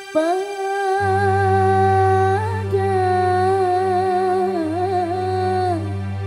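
A woman singing a long, held qasidah line through the PA, her pitch wavering in ornamented turns and falling away near the end, over sustained keyboard chords; a low bass note comes in about a second in.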